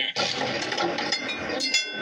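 Steady roadside background noise from a TV news report played over loudspeakers in a hall, with a few short ringing metallic clinks about a second in and near the end.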